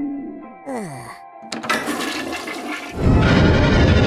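Cartoon toilet-flush sound effect: a quick falling glide about a second in, then gushing water that swells into a loud rush about three seconds in, over background music.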